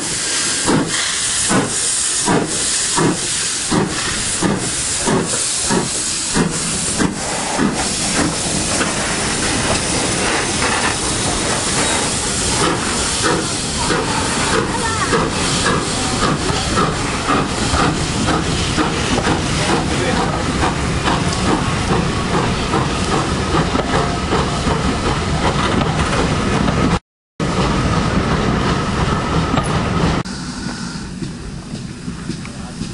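Caledonian Railway 812 class 0-6-0 steam locomotive No. 828 pulling away with hissing steam and exhaust chuffs at about two beats a second. The beats quicken and fade into the steady rumble of its coaches rolling past. The sound cuts out for a moment near the end.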